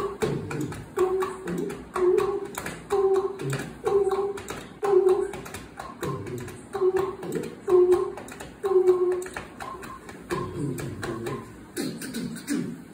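Beatboxing: a steady vocal beat of mouth clicks and percussive hits, with a short hummed note about once a second.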